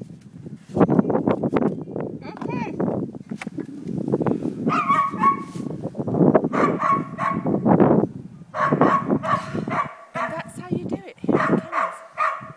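Kennel dogs barking, mixed with a person's voice.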